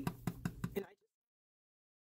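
A rubber stamp on a clear acrylic block tapped several times in quick succession onto an ink pad. The taps stop and the sound cuts off suddenly to dead silence about a second in.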